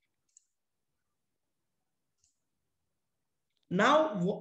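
Near silence with one faint, short click about half a second in, then a man's voice starting just before the end.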